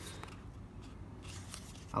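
Faint rustling and scraping of a cardboard box in the hands as a nylon web belt is slid out of it.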